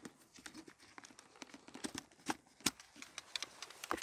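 Faint, scattered clicks and light taps from a motorcycle helmet and its plastic GoPro mount being handled, with two sharper clicks about two and a half seconds in.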